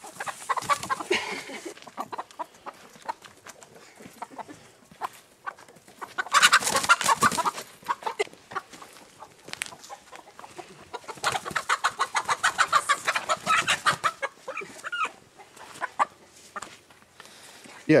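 A hen squawking in alarm as she is chased and caught, in two long bouts of rapid, repeated cries, with scuffling between the bouts.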